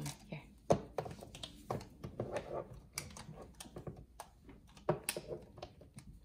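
Irregular small plastic clicks and knocks from a young child's hands handling a Minnie Mouse dress-up figure and trying to fit its removable plastic outfit piece.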